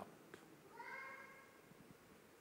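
Near silence, with one faint, high-pitched, voice-like cry lasting under a second, beginning about two-thirds of a second in.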